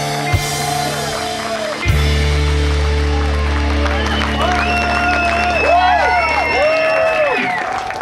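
A live folk-rock band with drums, electric bass, guitar and fiddle ending a song: steady drum beats, then a big hit about two seconds in and a long held final chord over a deep bass note, with sliding high notes played over it, starting to die away near the end.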